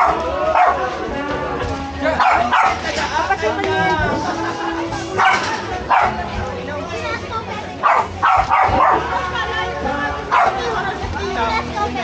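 A dog barking repeatedly in short, sharp bursts every second or two, over people talking and background music.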